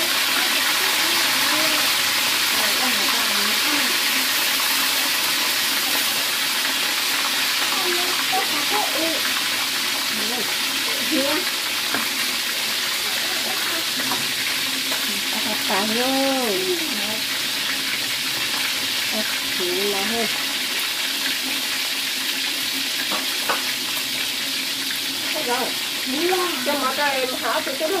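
Pieces of fish frying in hot oil in a wok, a steady sizzle throughout.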